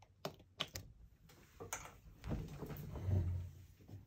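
Handling noise of a tarot deck and its guidebook being moved on a cloth-covered table. A few light clicks and taps come in the first two seconds, then a longer, louder rustle in the second half.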